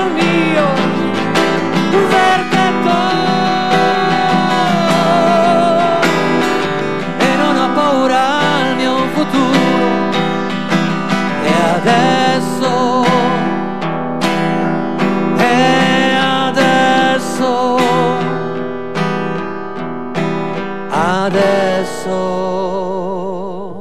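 A man singing with vibrato to his own strummed acoustic guitar, played live.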